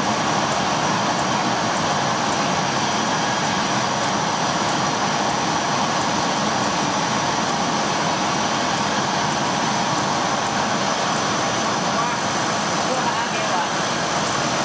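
JQ9060 laser cutting machine running steadily as its gantry drives the marking pen across fabric: an even, unbroken machine noise.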